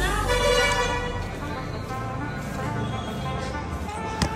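A vehicle horn sounding one long note that fades after about two seconds.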